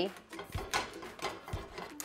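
Quiet handling of kitchenware at a stovetop: soft rustling with a few light, irregular knocks.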